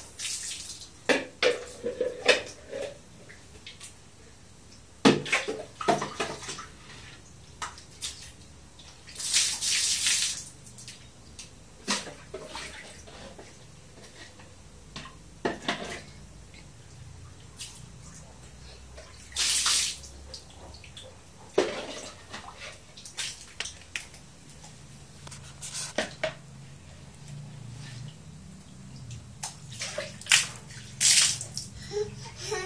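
Water scooped with a plastic dipper from a tiled water tub and splashed out in separate pours of about a second each, with sharp knocks and clatters of the plastic dipper against the tub and tiles in between.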